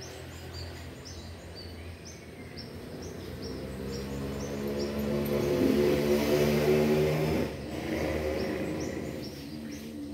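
Two-stroke chainsaw engine running at low speed, growing steadily louder over several seconds, then dropping suddenly about three quarters of the way through before picking up again. Birds chirp throughout.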